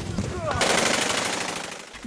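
Automatic gunfire: a fast, even run of shots starting about half a second in and fading toward the end. A man's voice is heard briefly just before it.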